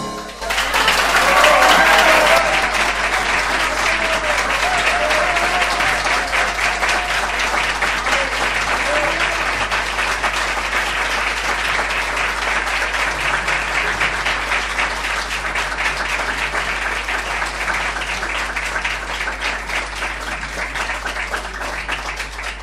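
Audience applauding: dense clapping sets in at once and slowly thins and fades toward the end.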